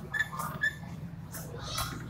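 Whiteboard being wiped by hand: a few quick rubbing strokes across the board, some with a short squeak.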